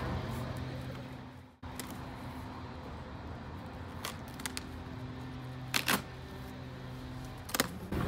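Packing tape being peeled off a cardboard shipping box and the flaps pulled open: a few short rips and scrapes, two close together around the middle being the loudest, over a steady low hum.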